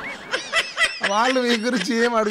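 A man's voice on a radio show: a short snickering laugh breaking into talk, with a warbling whistle-like sound effect fading out at the very start.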